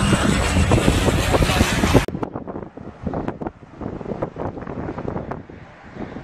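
Loud noise of a jet airliner passing low overhead, with people shouting, cut off abruptly about two seconds in. Then wind buffeting the microphone, with faint voices.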